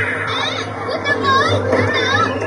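Children's high, excited voices over background music, with a steady low hum underneath.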